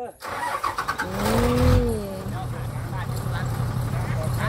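A large lorry's diesel engine starts about a quarter-second in and settles into a steady low throb. Over its first two seconds a long drawn-out call rises and falls.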